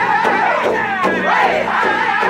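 Powwow drum group singing loud and high-pitched in unison over a large powwow drum struck with sticks about four beats a second. The beat thins out near the middle while the voices glide up and down.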